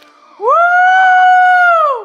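One long, loud, high-pitched held cry, beginning about half a second in: it rises at the start, holds one note, and slides down at the end.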